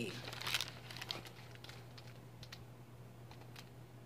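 Pages of a large picture book rustling as a page is turned and the book is lifted and handled, a brief rustle near the start followed by scattered light ticks and taps, over a low steady hum.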